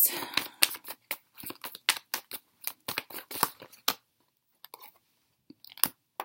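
Tarot cards being handled and shuffled by hand: a run of quick, irregular card snaps and rustles for about four seconds. Then a pause, and near the end one sharp snap as a card is laid down on the table.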